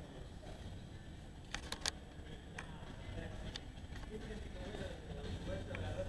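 Faint, indistinct voices over a low steady rumble of room noise, with a few sharp clicks about a second and a half in.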